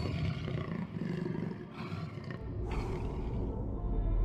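A roar in the soundtrack over background music, swelling about two-thirds of the way in and then thinning out near the end.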